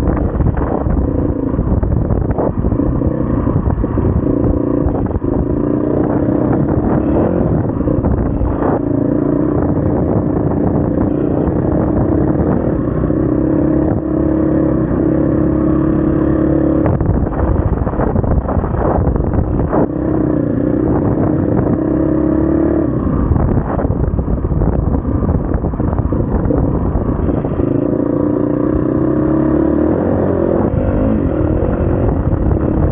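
SWM RS500R's single-cylinder four-stroke engine running under way off-road, its pitch rising and falling several times with throttle and gear changes, with a marked drop about halfway through. Frequent short knocks and rattles run through it.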